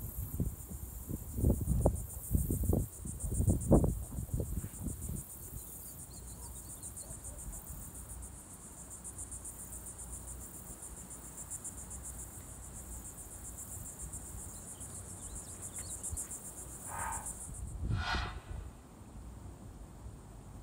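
Insects trilling steadily, high-pitched with a fast pulse, which cuts off suddenly near the end. A few low thuds stand out in the first few seconds.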